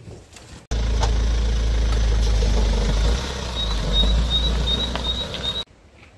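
An engine running with a deep low rumble that cuts in abruptly about a second in and stops abruptly near the end, with a short row of high chirps or beeps over it in its last two seconds.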